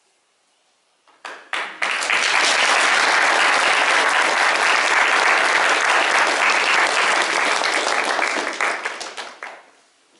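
Audience applauding: a few scattered claps about a second in build quickly into full, steady applause that thins out and dies away near the end.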